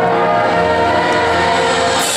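Marching band brass section holding one long, loud chord, with the low brass sounding a steady bass note beneath it.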